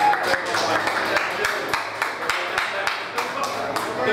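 Scattered hand clapping from a small audience as a live acoustic song ends, irregular claps over people talking.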